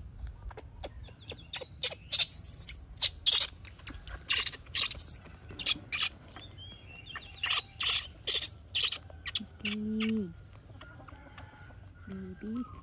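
Plastic-backed disposable diaper crinkling and rustling in quick, irregular crackles as it is wrapped and fastened around a baby monkey. A short, low, slightly falling voice-like sound comes near the end.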